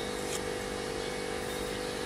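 Air compressor running steadily, an even hum with a constant hiss of air.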